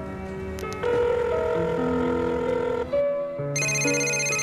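Background music with sustained notes. About three and a half seconds in, a high, rapidly pulsing electronic telephone ring starts.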